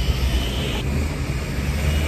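Low, steady rumble of city street traffic under a faint higher hiss.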